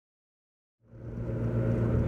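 Silence, then about halfway in a steady low engine hum fades in and holds.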